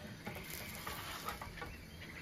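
Spatula scraping and clicking against a small frying pan as it slides under a grilled cheese sandwich to lift it, with a few short scrapes over a steady background hiss.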